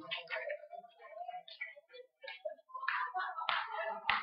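Scattered short taps and clicks of hand handling noise, irregular and fairly faint, with two louder strokes near the end.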